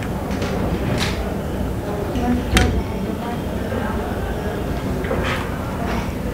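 Busy restaurant room noise with background chatter, broken by three short, sharp clinks of a steel spoon against plates. The loudest clink comes about two and a half seconds in.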